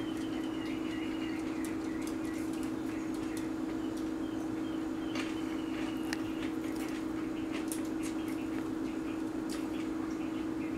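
A steady low hum, with scattered small clicks throughout and faint bird chirps in the first two seconds and again about five seconds in.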